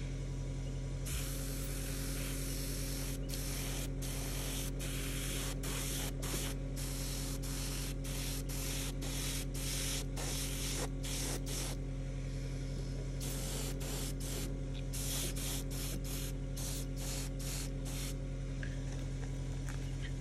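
Airbrush spraying enamel paint in on/off bursts, a few longer passes then many short squirts, laying a sporadic patchy coat, over a steady low hum.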